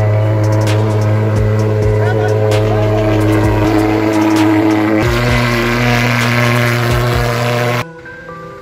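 Portable pulse-jet thermal fogging machine running with a loud, steady buzzing drone as it fogs disinfectant. Its tone shifts slightly about five seconds in, and the sound cuts off suddenly near the end.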